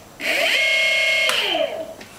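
Golden Motor BLT-650 electric motor spinning up unloaded on a 20S (about 76 V) lithium pack. Its whine rises in pitch and holds steady for about a second, then falls in pitch and fades as the motor winds down.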